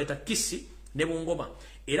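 A man speaking in a monologue, two short phrases with brief pauses between them.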